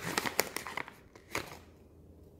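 Plastic dog-treat pouch crinkling as a hand rummages inside it for a treat. The crackles come in a quick run over the first second, with one more a little later.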